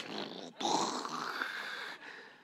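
A man's voice imitating rolling thunder: a wordless, breathy, growling rumble lasting about a second and a half that fades out near the end.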